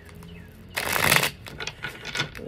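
A deck of cards being shuffled by hand: one brief burst of rustling cards about a second in, followed by a few light clicks as the cards are handled.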